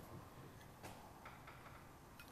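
Near silence: room tone with a few faint light clicks, the clearest a little under a second in.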